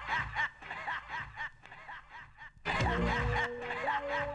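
A man chuckling, a run of short laughs fading out, then music coming in loudly about three-quarters of the way through.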